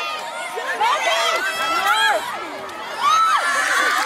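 Crowd of spectators and children shouting and cheering at a youth football match, many high voices overlapping, with a louder burst of cheering about three seconds in.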